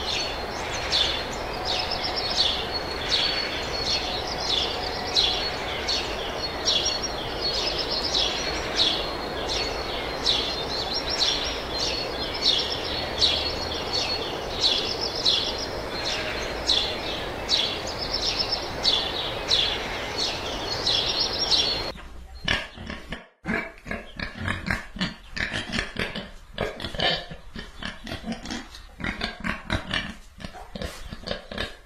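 Hummingbirds chirping, short high chirps about twice a second over a steady hiss. About 22 seconds in this cuts abruptly to a pig grunting in short irregular grunts.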